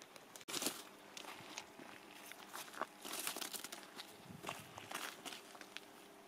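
Quiet, irregular crunching and scuffing of a small child's shoes on a gravel path as he scoops up icy snow.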